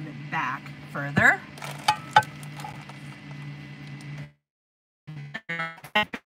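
A glass bottle clinks twice against a plate over a steady low hum. About four seconds in, the audio cuts out to dead silence, and a short burst of sound comes back just before the end.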